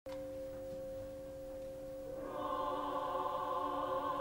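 Distant opera chorus holding a quiet, steady chord. About two seconds in it swells louder as more voices join higher up.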